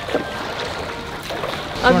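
Steady rush of fast-flowing river water around a coracle being paddled through the current.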